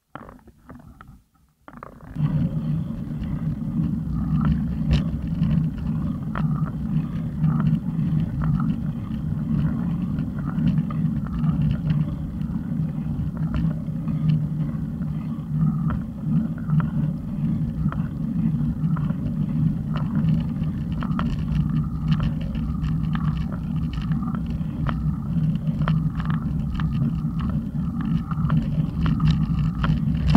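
A steady low rumble of wind and road noise from riding, setting in suddenly about two seconds in, with scattered small clicks.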